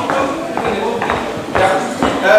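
People talking in a large hall, with a few short knocks in between.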